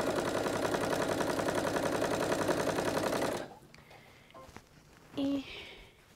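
A Janome sewing machine stitching a seam at a fast, steady stitch rate, stopping suddenly about three and a half seconds in. A few faint clicks follow as the fabric is handled.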